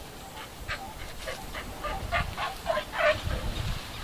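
An animal giving a rapid run of about ten short calls, several a second, growing louder toward the end, the last few falling in pitch.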